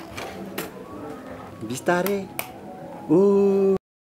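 People's voices in short calls, one held for most of a second near the end, with a few sharp clicks between them. The sound drops out abruptly at the very end.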